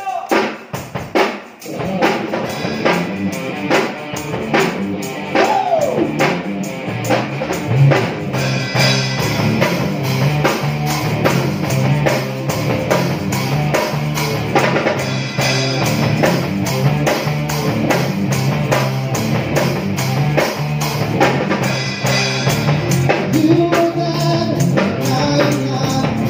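Live rock band playing upbeat music on electric guitars and drum kit. After a few sparse hits at the start, the full band comes in about two seconds in with a steady driving beat.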